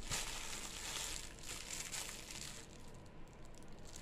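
Faint crackly rustling noise, loudest for the first two and a half seconds, then fading.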